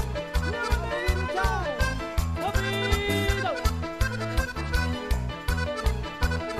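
Live cuarteto band music: a Paolo Soprani piano accordion plays the melody and chords over a steady bass-and-drum beat.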